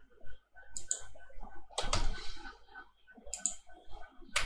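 Computer keyboard keystrokes and clicks while a spreadsheet formula is edited: a few separate short clusters of taps, one slightly longer run about two seconds in.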